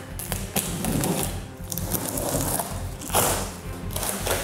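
Background music over cardboard rustling and scraping as a long shipping box is opened, with noisy surges about a second in and again near the end.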